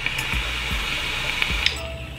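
Vaping draw on an RDA atop a squonk box mod: a steady airy hiss of the coil firing with a few faint crackles, cutting off about one and a half seconds in.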